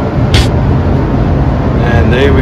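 Steady low rumble of rushing air from a paint spray booth's ventilation, with one brief high hiss about a third of a second in.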